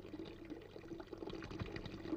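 Faint crackling background noise with scattered small ticks.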